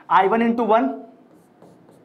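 A man says "I one", then a pen starts writing on an interactive touch display, making faint light ticks and scrapes on the screen surface.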